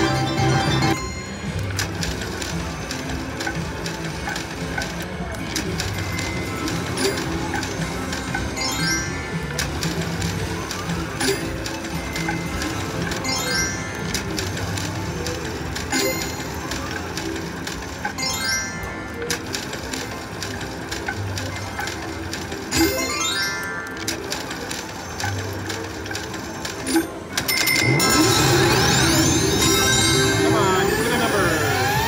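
Cash Machine slot machine spinning again and again: a spin sound with a short rising tone and reel-stop clicks about every two seconds, over music. Near the end it gets louder with a run of sweeping tones.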